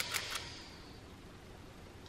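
Quiet room tone: a steady faint hiss after a few soft clicks in the first half-second.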